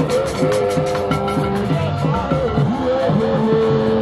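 Live traditional band music: hand drums and percussion keep a beat under long, wavering melodic notes, with one note held steady near the end.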